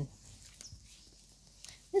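A quiet pause: faint outdoor background with a few faint, soft ticks, and a woman's voice starting again at the very end.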